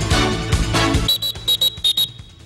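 Music for the first half, then a referee's whistle blown in about six short, high blasts in quick succession.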